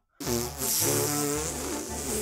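A long, raspy hiss, starting just after a short gap of silence, over background music.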